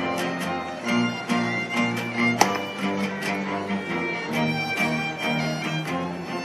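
Live street string band: two violins playing over an acoustic guitar strumming a steady rhythm and a double bass, with one sharper accented stroke a little before halfway.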